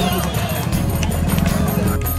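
Hoofbeats of a ridden horse, heard together with music and voices.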